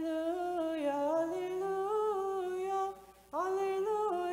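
A single voice chanting a long, wordless-sounding melismatic phrase of Orthodox liturgical chant, the pitch gliding up and down over a held vowel. The phrase ends about three seconds in and a new one begins a moment later.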